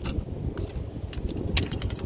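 Wind rumbling on the microphone, with a few sharp clicks and taps from the arrow lodged in a cow skull being gripped and handled: one at the start and a quick cluster about three-quarters of the way through.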